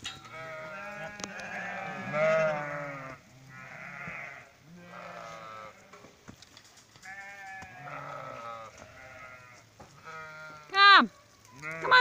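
Sheep bleating again and again, long quavering bleats that overlap one another. Near the end one short, much louder call drops steeply in pitch.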